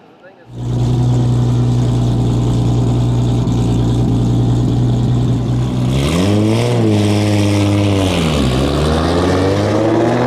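Engines of a 2JZ-swapped BMW 335i and a built Audi RS3 running steadily as the two cars roll at low speed; about six seconds in the engine note rises and falls, then climbs steadily as the cars accelerate away.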